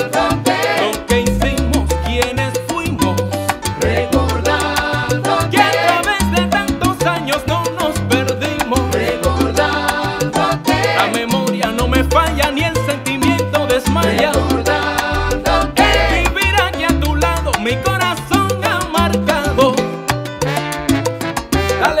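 Salsa band playing an instrumental passage, with horns over a steady, repeating bass line and percussion.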